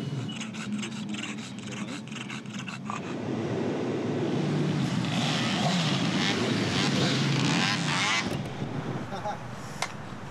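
Car engine running low and steady, heard from inside the cabin, with rapid rustling and clicking over it for the first few seconds. Then a hiss of street noise with indistinct voices, which changes abruptly about eight seconds in.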